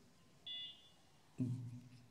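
A brief, faint high-pitched electronic beep about half a second in, then a short low vocal sound from a man near the end.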